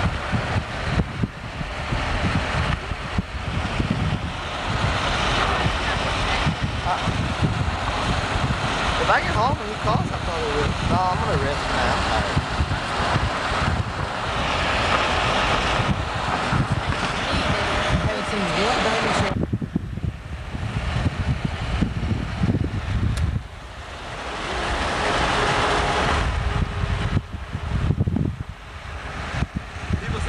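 Wind rushing over the microphone and road noise from a moving car, filmed out an open side window. The rush thins and briefly drops off about two-thirds of the way in, then builds again.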